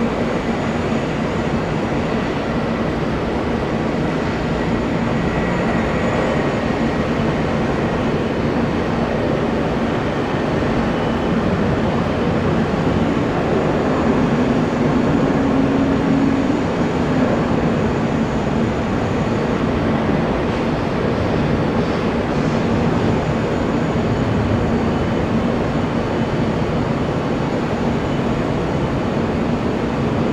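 Airbus A320 jet engines at takeoff power: a loud, steady roar through the takeoff roll and climb-out, swelling a little around the middle as the aircraft lifts off.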